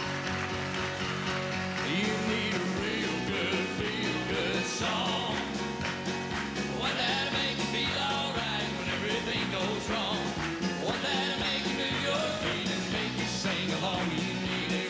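Upbeat southern gospel song intro played live by a band, led by grand piano, with drums keeping a steady beat.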